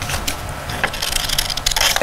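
Scissors cutting brown construction paper: a series of short snips with the crisp rustle of the paper.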